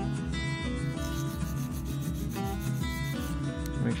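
A hand nail file rubbing back and forth along the side of a clear 5XL square nail extension tip, shaping the side straight. Background music plays under it.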